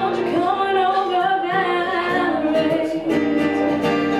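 A woman singing with acoustic guitar accompaniment, holding long sung notes, with the guitar strumming coming forward near the end.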